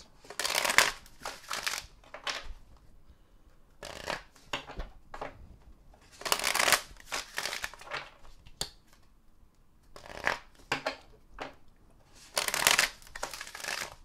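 A deck of oracle cards shuffled by hand three times, each shuffle a rush of about a second, some six seconds apart, with lighter rustling and tapping of the cards between.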